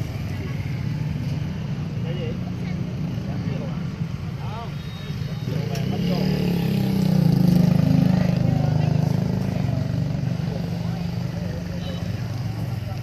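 Low, steady motor vehicle engine rumble that swells up about halfway through and fades back over a few seconds, with faint voices in the background.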